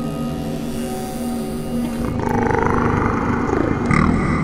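A door creaking open, starting about halfway in with a long squeal that wavers in pitch and slides down near the end, over steady background music.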